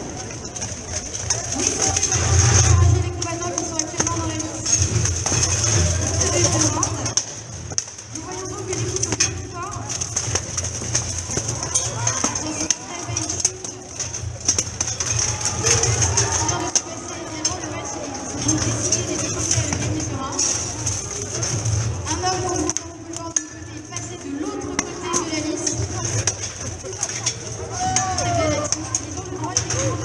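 Voices and shouts from fighters and spectators over irregular clanks and knocks of steel armour and weapons striking in a full-contact armoured fight.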